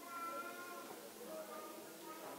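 A young child's high-pitched voice, with quiet, indistinct talk from other people in the room.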